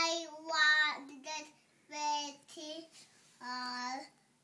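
A toddler singing in wordless, sing-song syllables: about six short held notes with brief pauses between them, the last one held longer near the end.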